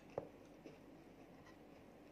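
Quiet eating and handling sounds of a chocolate-chip cookie cup close to the microphone: one soft knock a fraction of a second in, a smaller one about half a second later, then faint scattered ticks and crackles.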